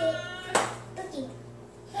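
Young children's high-pitched voices vocalizing, with a brief sharp noise about half a second in.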